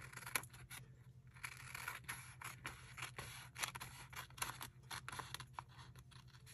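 Scissors cutting along the edge of a paper envelope: a run of faint, short snips, about three a second from a second or so in.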